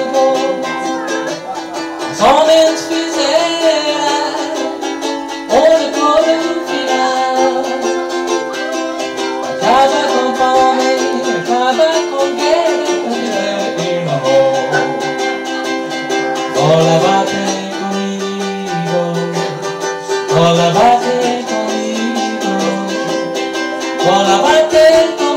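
A man singing a Portuguese-language song over his own strummed string-instrument accompaniment.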